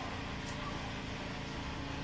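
Steady background noise, an even hiss with a faint low hum, and a single faint tick about half a second in.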